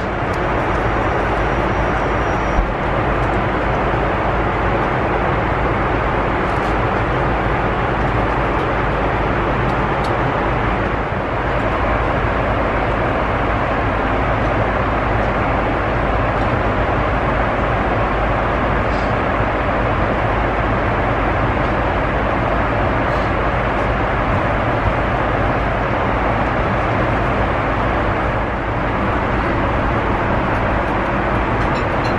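Steady in-flight cabin noise of a Boeing 747 in cruise: the even rush of airflow and engines heard inside the cabin.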